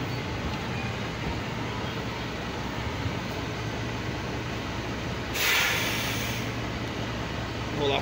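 Semi-truck's diesel engine idling steadily, heard from inside the cab, with a burst of compressed-air hiss from the air brakes lasting about a second, a little past the middle.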